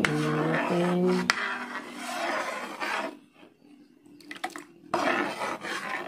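A metal spatula stirring a thin liquid mixture in a pan, scraping against the pan in two stretches with a quieter gap between that holds a few light clicks.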